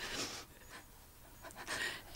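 A crying woman's breathing: a breathy gasp at the start, then near quiet, then another short inhale near the end.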